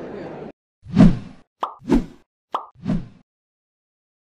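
Crowd chatter that cuts off abruptly about half a second in, followed by cartoon-style pop sound effects: three pops about a second apart, the first the loudest, the last two each just after a short higher blip.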